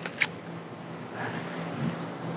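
Quiet outdoor background with a steady low hum, broken by one short sharp click just after the start.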